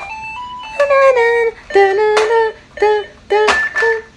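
A child's electronic musical toy playing a simple tune: a string of short, steady notes stepping up and down in pitch.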